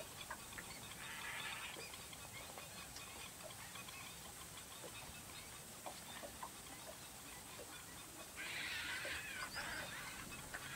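Birds calling in two short hoarse bursts, one about a second in and a longer one near the end, with scattered faint clicks between.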